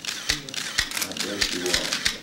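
Press cameras clicking rapidly, several shutters firing a second, one after another.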